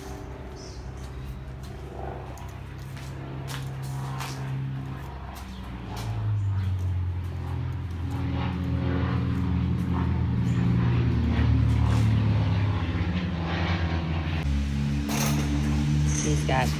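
Harley-Davidson Dyna Street Bob Twin Cam V-twin idling steadily through Vance & Hines slip-on mufflers, growing louder about six seconds in.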